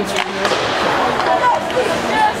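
Spectators chattering in an ice hockey rink, over the scrape of skates on the ice, with a sharp clack from the play just after the start.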